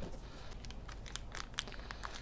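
Plastic packaging bag crinkling as it is handled and lifted out of foam packing: a scatter of soft, short crackles, busiest around the middle.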